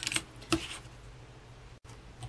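Craft knife blade drawn along a metal straight edge, scoring through a laminated plastic sheet on a cutting mat: a short scrape at the start and another brief one about half a second in, then faint room tone. The blade is one its user thinks might be due for replacing.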